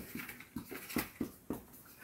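Chalk writing on a chalkboard: a run of faint, short taps and scrapes, several strokes a second.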